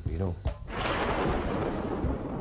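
A dramatic sound-effect sting: a loud, thunder-like rumbling noise surges up about a second in and holds, just after a line of dialogue.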